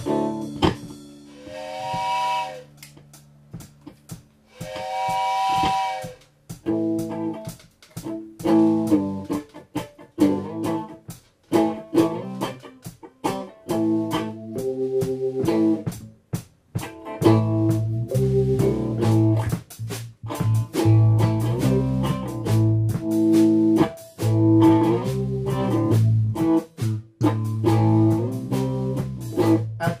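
Live band's instrumental intro: two long train-whistle blasts, then an electric guitar riff with drums, joined a little over halfway through by a heavy bass guitar line.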